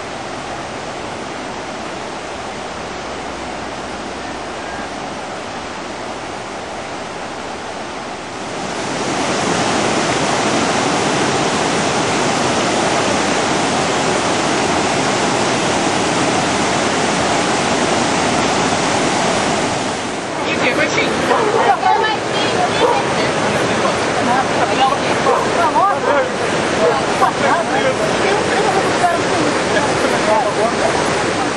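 Water pouring over a low stone river weir, a steady rush that gets louder about eight seconds in. From about twenty seconds, voices call out over the flowing water.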